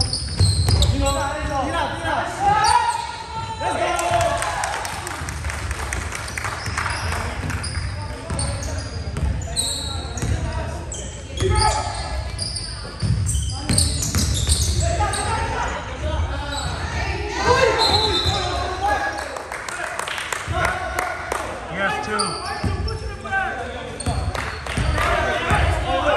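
Basketball bouncing on a hardwood gym floor during play, with short high sneaker squeaks, all echoing in a large gymnasium.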